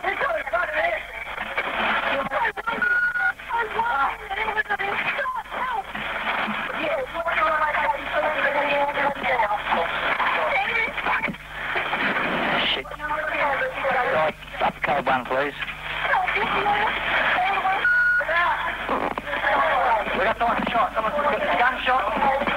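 Recorded police radio traffic: voices over a narrow, crackly two-way radio channel, with a short beep tone about three seconds in and another near the eighteen-second mark.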